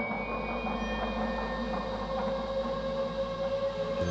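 Background film score: a sustained, droning suspense chord of held tones over a steady low drone, slowly growing louder.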